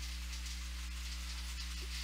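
Steady low hum with a faint hiss: the background noise of the recording setup, with no other sound.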